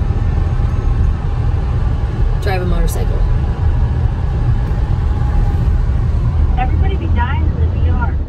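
Steady low rumble of road and engine noise inside a moving car's cabin. Brief voices are heard twice, around a third of the way in and near the end.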